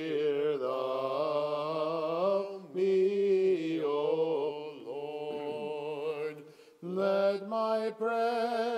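Male voices chanting a slow, drawn-out melismatic Orthodox hymn melody over a steady held drone note (ison), in the Byzantine manner. The chant breaks briefly for breath a few seconds in and again near the end.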